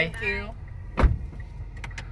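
A car door shutting with a single solid thump about a second in, heard from inside the cabin over the car's low idling hum.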